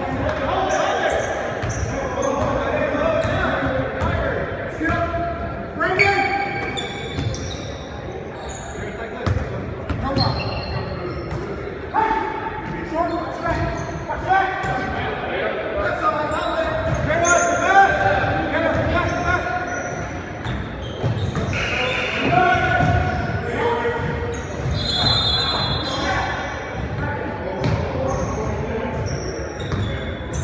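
Basketball bouncing on a hardwood gym floor during play, with repeated thuds, amid players' shouts and calls that echo in the large hall.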